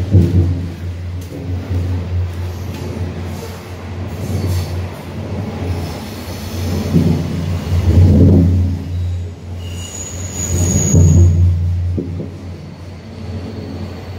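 Main line train passing directly overhead, heard from inside a corrugated steel culvert underpass: a loud, deep, steady rumble that swells several times, with a brief high squeal about ten seconds in.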